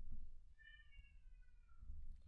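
A faint animal call, one drawn-out note falling slowly in pitch, after a soft click at the start.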